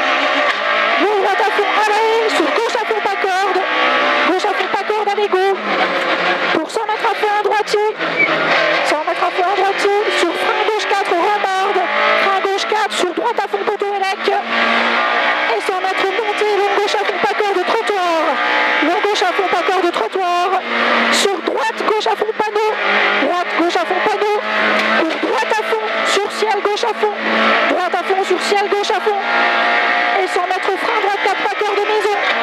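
Peugeot 106 F2000 rally car's four-cylinder engine heard from inside the cabin, revving hard and rising and falling in pitch again and again through gear changes, lifts and braking at full stage pace.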